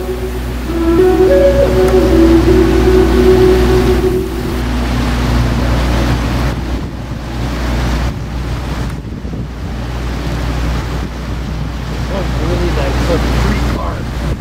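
The last held notes of a song fade out about four and a half seconds in, leaving wind buffeting the microphone in gusts over the steady drone of speedboats and jet skis running across the lake.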